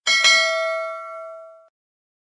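Notification-bell sound effect: a bright bell ding struck twice in quick succession, ringing and fading away within about a second and a half.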